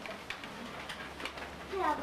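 A pause in conversation: quiet room tone with a faint steady low hum, and a voice starting up again near the end.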